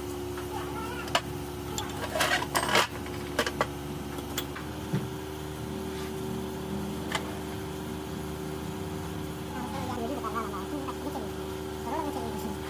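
Steel grader transmission parts, clutch plates, bearing races and gears, clinking and knocking now and then as they are oiled and fitted together by hand, over a steady low machine hum.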